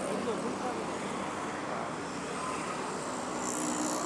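Steady road and wind noise from riding an electric scooter in traffic.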